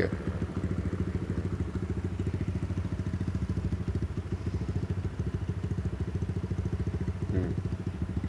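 Kawasaki KLX150 D-Tracker's single-cylinder four-stroke engine idling steadily, an even fast low putter.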